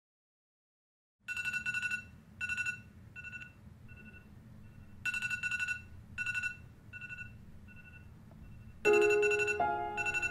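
Smartphone alarm ringtone going off: two bright ringing bursts followed by a run of fading beeps, the pattern repeating about every four seconds over a low hum. Near the end a louder sound with lower tones joins in.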